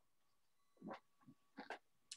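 Near silence, broken by two faint, brief sounds: one about a second in and another shortly before the end.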